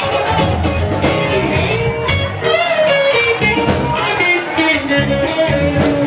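A live band playing, a guitar to the fore over a steady beat of about two strokes a second.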